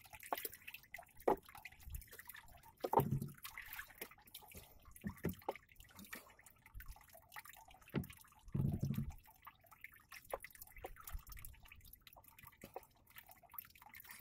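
Small waves lapping against the side of a small boat drifting on calm sea, with faint scattered drips and plops. Two short low hums stand out, about three and nine seconds in.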